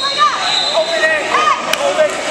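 Overlapping voices of spectators calling out in a gym, with a steady high tone underneath and one sharp click near the end.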